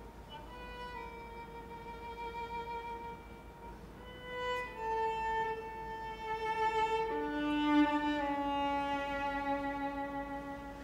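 Solo viola playing a slow line of long, sustained notes with few changes of pitch, a lower held note coming in about seven seconds in.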